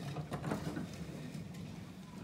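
Plastic wheels of a Little Tikes Cozy Coupe ride-on car rolling over a hard floor as a toddler pushes it: a low rumble with a few light knocks.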